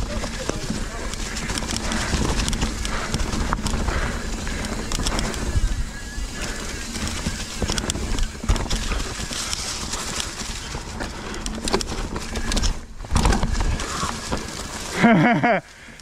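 2021 Specialized Enduro mountain bike ridden down a rocky dirt trail: tyres rolling over dirt and rock, with many small knocks and rattles from the bike over a steady low rumble. A short laugh near the end.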